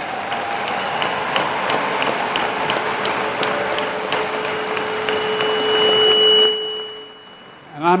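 Audience applauding, with a long held call rising above it near the end. It dies away about six and a half seconds in.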